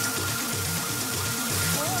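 Techno track playing through a Pioneer DJ mixer, with a steady kick drum about twice a second and a held synth tone, while the mixer's Gate Compressor effect is demonstrated on it. A second held tone comes in near the end.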